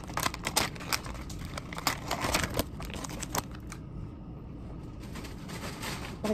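Plastic seasoning packet crinkling and crackling as it is shaken and squeezed out over a plastic noodle bowl, in a quick run of small clicks that stops about three and a half seconds in.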